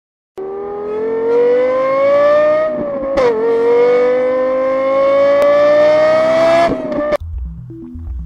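A car engine accelerating hard: its note climbs steadily, drops briefly at a gear change about three seconds in, climbs again through the next gear, then cuts off about seven seconds in.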